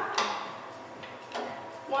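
Two short, sharp clicks about a second apart, with faint steady background music underneath.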